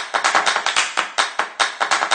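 A quick, slightly uneven run of sharp handclaps, about seven a second.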